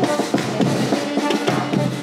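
A band playing lively music, with bass drum and snare drum keeping a steady beat under sustained melody notes.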